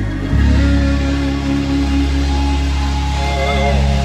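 Live gospel band music: sustained chords over a deep held bass note that changes about a third of a second in.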